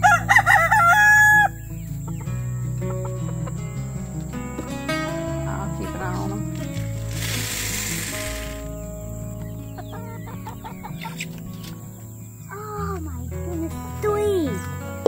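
A rooster crows once, loud, over steady background music in the first second and a half. About seven seconds in, feed pellets pour into a plastic chicken feeder for about a second and a half, and chickens give short falling calls near the end.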